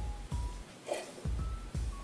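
Background music with a deep thumping beat and short, thin high notes, with a brief breathy noise about a second in.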